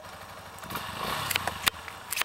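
Yamaha 250 cc trail bike's single-cylinder engine running low, then revving up about a third of the way in and held on the throttle for about a second, with a couple of sharp clicks over it.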